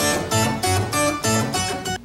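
Music cue of guitar strumming chords, about three strums a second, with the chords changing as it goes.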